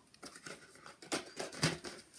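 A mail package being opened by hand: a few short, irregular rustles and tears of the packaging.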